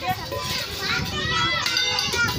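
A group of children chattering and calling out over one another, their high voices overlapping.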